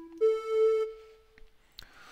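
Arturia Jup-8 V software synthesizer, an emulation of the Roland Jupiter-8, playing its 'Leadoflute' lead patch: a note held over the start, then a higher note from a fraction of a second in that fades out by about a second and a half. A single click comes near the end.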